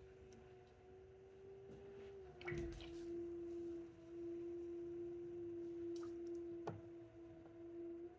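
Electric pottery wheel's motor running with a faint steady hum; about two seconds in its pitch drops slightly and it gets louder. A few short soft clicks come from the work on the wet clay.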